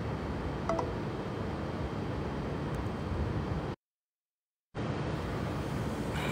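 Steady low background rumble picked up by a phone microphone outdoors, with a faint click about a second in. The sound cuts out completely for about a second, about four seconds in: an audio dropout in the live stream.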